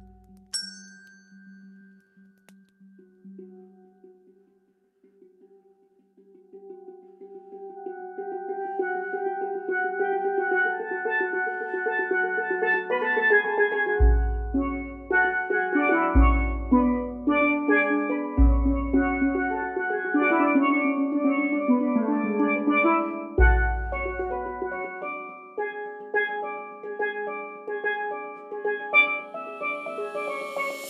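Steel pans playing rolled, overlapping notes. The pans are soft for the first several seconds and build up from about a quarter of the way in. A pedal-struck bass drum hits four times through the middle stretch.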